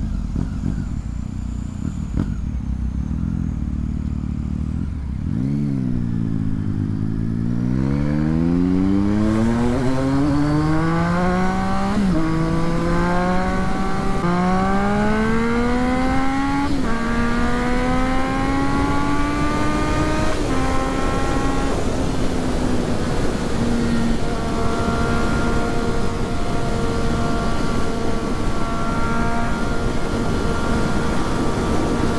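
Triumph Street Triple 675's three-cylinder engine running low, then accelerating hard from about five seconds in. Its pitch climbs through four upshifts, each a sudden drop, and then settles into a steady cruise for the last several seconds, with wind noise growing as speed builds.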